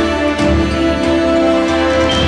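Closing theme music of a TV news programme: held chords over a recurring low pulse.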